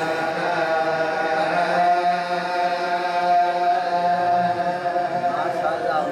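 A man's voice reciting an Urdu salam, a devotional elegy, in a slow melodic chant with long held notes and no instruments.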